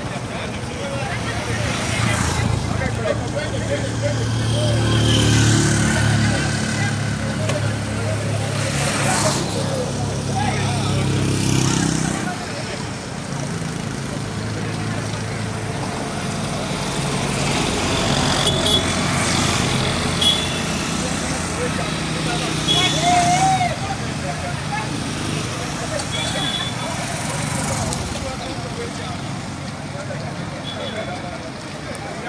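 Street traffic: a motor vehicle's engine running close by for about the first twelve seconds, then fainter traffic, with people talking indistinctly in the background.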